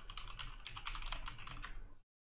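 Fast typing on a computer keyboard: a quick, uneven run of key clicks, several a second, as a short phrase is typed.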